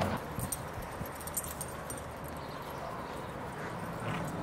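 Puppies playing on grass: faint scuffling and a few light clicks and ticks in the first second and a half, over a steady low hiss.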